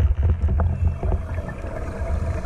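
Underwater ambience picked up by a GoPro beneath the sea: a dull low rumble of moving water with scattered faint clicks.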